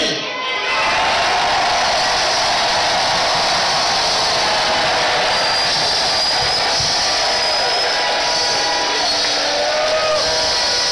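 A large crowd of worshippers shouting and cheering together. It makes a loud, steady wash of many voices that swells in about half a second in and holds unbroken.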